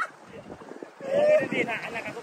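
Wind on the microphone and water noise for about a second, then a person's voice, loud, from about a second in.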